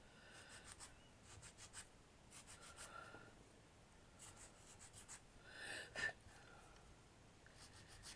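Faint scratchy rasping of a small file drawn over the edge of a dried clay miniature plate, in short runs of quick strokes with brief pauses between them, smoothing the edge.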